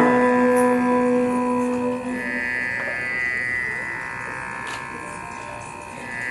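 Carnatic music accompanying a classical dance: a long held note ends about two seconds in, and a quieter sustained tone then fades away toward the end.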